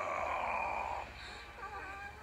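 Sound effects from the animated cartoon's soundtrack: a hiss with a steady high tone for about the first second, then faint warbling tones.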